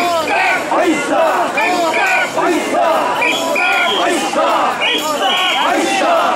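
Mikoshi bearers shouting their carrying chant together, many loud, overlapping male voices calling without a break.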